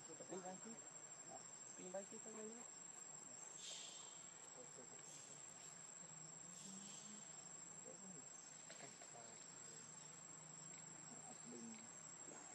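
Faint insect sound: a steady high-pitched drone, with short rasping buzzes every second or two.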